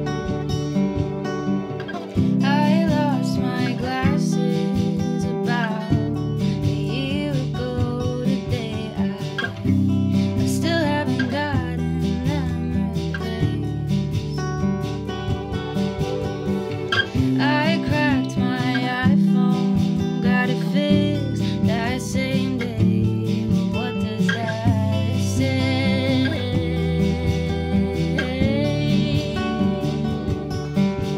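Acoustic guitar strummed, with a woman singing over it from about two seconds in.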